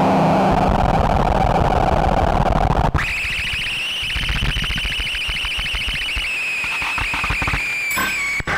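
Prepared LM Ericsson switchboard played through a circuit-bent Behringer distortion pedal. A dense, distorted noise for about three seconds cuts off abruptly into a steady high-pitched tone that drifts slightly down over a fast crackle, stopping near the end.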